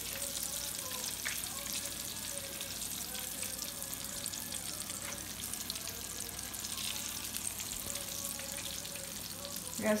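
Saltine-cracker-breaded shrimp frying in a skillet of hot oil: a steady sizzle.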